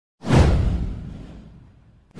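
A single whoosh sound effect with a deep low end, starting suddenly about a quarter second in and fading out over about a second and a half.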